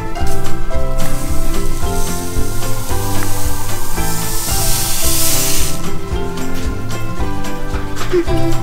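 Background music throughout. Over it, from about a second in until about six seconds in, crystal-growing powder pours from a packet into a glass measuring cup of hot water with a loud, steady hiss.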